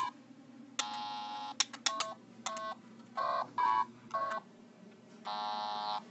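A Simon carabiner keychain memory game sounding about ten electronic beeps at several different pitches in an irregular sequence, some short blips and some held for most of a second, the longest near the end. It is playing on its own as if malfunctioning, 'gone crazy'.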